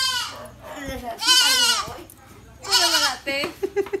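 A goat bleating. A quavering bleat fades out at the start, two longer bleats follow about a second in and near three seconds, and shorter calls come just after the last.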